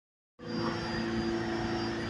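Steady rumble and hum of a subway platform, with a few constant tones running through it. It starts suddenly a moment in, after a brief silence.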